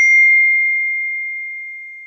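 Phone text-message notification chime: a single bright ding on one clear pitch, struck just before and ringing out, fading slowly over about two seconds.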